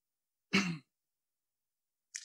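A man briefly clearing his throat once, about half a second in; otherwise silence.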